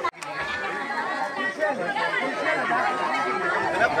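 Several people talking at once, overlapping voices with no single clear speaker. A brief drop-out just after the start, where the sound cuts off for a moment.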